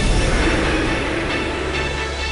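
Intro of a music-video soundtrack: a loud rushing, rumbling noise effect, with high musical notes joining in about a second in.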